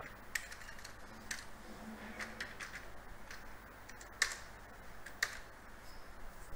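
Computer keyboard keystrokes, a handful of separate clicks spaced irregularly, the two loudest a little after four and five seconds in.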